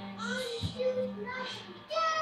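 A young girl singing a few short, wavering notes without clear words.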